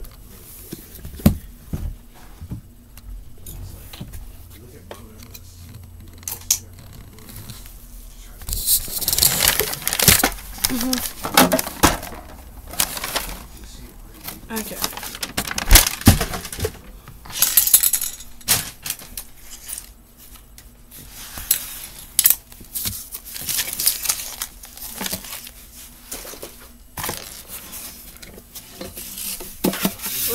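Close handling and rummaging noise: irregular rustling and crinkling with light clatters and clicks. It picks up about 8 seconds in and comes and goes in bursts.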